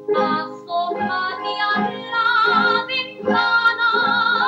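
A woman singing a lively song over instrumental accompaniment with a regular beat; from about two seconds in she holds a long, wavering note.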